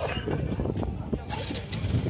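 Indistinct voices of people milling about outdoors over a low rumble, with a brief hiss about one and a half seconds in.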